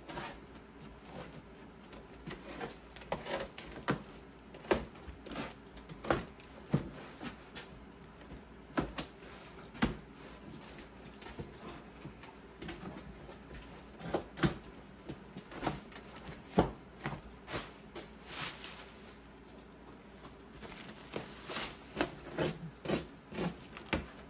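A large cardboard shipping box being handled and opened: scattered knocks, taps and clicks against the cardboard, with bursts of cardboard and plastic wrap rustling later on.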